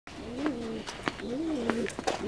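Domestic pigeon cooing twice, each coo a low call about half a second long that rises and falls in pitch, with a few light clicks in between.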